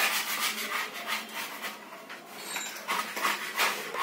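Uneven rasping scrape strokes on a tiled surface, about two to three a second.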